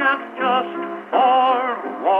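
Edison C250 Chippendale Diamond Disc phonograph playing a 1928 electrical recording of a tenor with piano accompaniment. The sound is thin, with no deep bass and no high treble. About a second in, a strong note starts with a wavering vibrato and is held.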